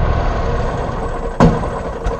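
Riding lawn mower's engine running steadily, with one sharp knock about one and a half seconds in.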